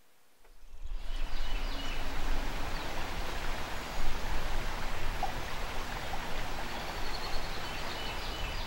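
Steady rushing of river water, fading in over the first second, with a few faint high chirps.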